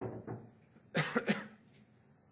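A man coughing into a microphone: a short throat sound at the start, then three quick, sharp coughs about a second in, from something caught in his throat.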